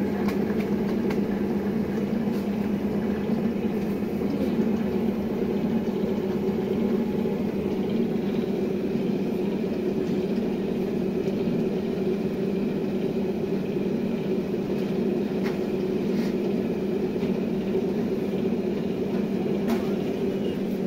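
Steady low machine hum that holds an even pitch throughout, with a few faint clicks.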